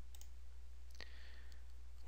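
A single computer mouse click about a second in, followed by a brief faint tone, over a steady low hum.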